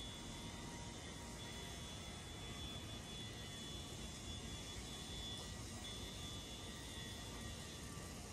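Steady low background rumble of city traffic and a construction site, with a faint, thin high-pitched whine that drops out now and then.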